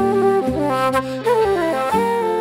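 Instrumental Irish traditional tune: a wooden Irish flute plays the melody in quickly changing notes alongside a bowed fiddle, over lower held accompaniment notes.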